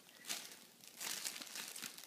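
Paper crinkling and rustling as it is handled: a short burst about a third of a second in, then a longer stretch of crinkling from about one second in.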